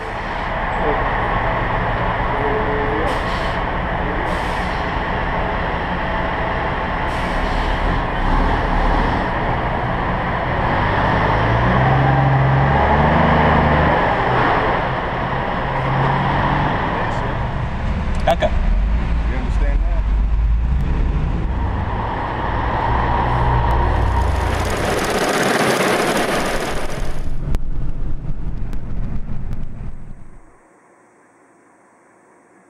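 Vehicle engines running at a checkpoint lane, a truck among them, with a loud hiss lasting about three seconds near the end.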